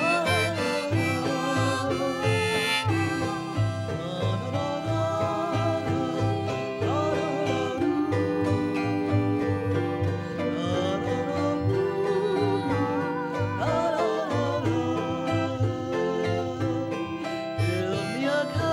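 Instrumental break of a jug-band folk tune: a harmonica plays the wavering melody over a strummed autoharp and an evenly pulsing bass line.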